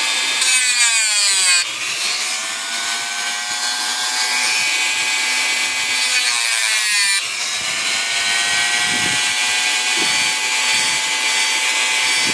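Dremel rotary tool running with a small cutoff wheel, cutting through paper clip wire twice, near the start and about six seconds in. Each cut adds a harsh grinding hiss and drags the motor's whine down in pitch under the load, and the whine then climbs slowly back up to speed.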